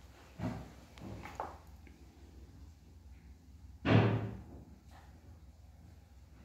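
A few soft knocks, then a single loud thud about four seconds in, like a door bumping shut.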